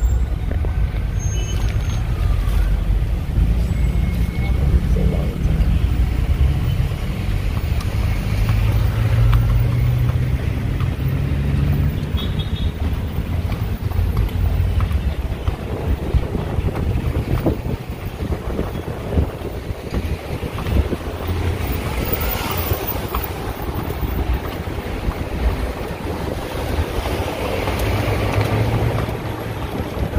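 Wind rumbling on the microphone and street traffic noise, heard from an open horse-drawn carriage as it moves, with a dense run of quick clicks and clatter in the second half.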